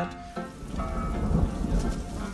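Rain falling with a low rumble of thunder that swells about halfway through, under faint held music notes, from the cartoon's soundtrack.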